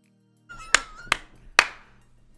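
Three sharp clicks about half a second apart, starting about half a second in, with a short wavering tone under the first two.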